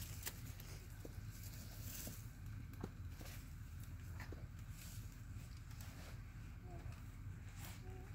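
Quiet outdoor ambience: a steady low rumble with a few faint, scattered clicks and small chirps.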